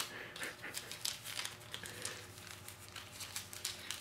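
Plastic wrapper crinkling as a small packet is handled in the hands: faint, irregular crackles throughout.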